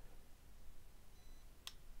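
Near silence: faint room tone, with one short, sharp click near the end.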